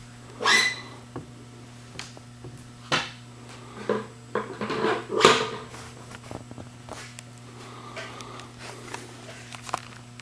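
Scattered knocks, clicks and scrapes of a Rotovac 360i rotary carpet-cleaning head being handled and screwed off and on by hand, with a busier stretch about four to five seconds in, over a steady low hum.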